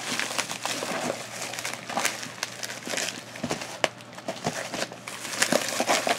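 White packing wrap crinkling and rustling as it is pulled off a parcel by hand, with many small irregular crackles.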